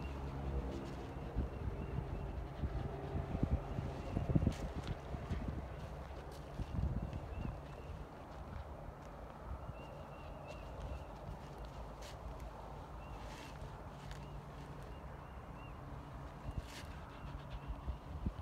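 Rubber curry comb rubbed in circles against the hair of a horse's coat: a low scrubbing noise with a few light knocks, louder in the first half.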